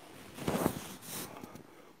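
A man's breathing in a pause between spoken phrases: a noisy intake of breath about half a second in, then a fainter hiss.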